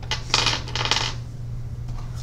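A brief clinking rattle of small hard objects being handled, lasting about a second near the start, over a steady low hum.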